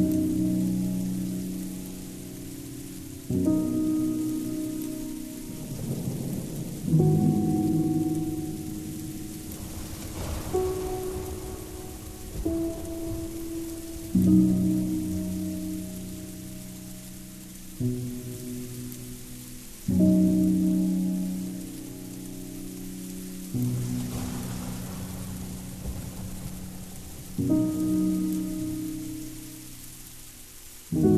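Slow dark ambient music: low, sustained synth-like chords, each starting suddenly and fading, about one every three to four seconds. Under them is a noisy, rain-like wash that swells twice.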